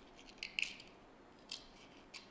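A small screwdriver prying apart a plastic LED driver housing: short plastic clicks and scrapes, a cluster about half a second in and another sharp click about a second and a half in.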